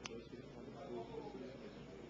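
Faint, indistinct talking in a large room, with a single sharp click at the very start.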